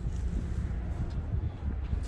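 Wind rumbling on the microphone, a steady low noise with no distinct clicks.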